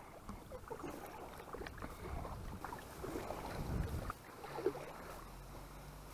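Sounds of a plastic fishing kayak on the water: low wind rumble on the microphone with scattered small knocks. A low steady hum comes in about two-thirds of the way through.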